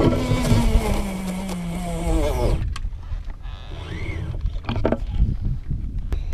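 Baitcasting reel spool whirring as line pays out behind a sinking two-ounce jigging spoon, its pitch falling steadily until it stops about two and a half seconds in. A sharp thump at the very start, with wind rumble on the microphone throughout.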